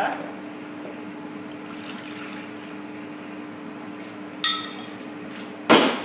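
Warm water poured from a measuring jug into a plastic mixing bowl, then a ringing clink about four and a half seconds in and a loud knock near the end. A steady low hum runs underneath.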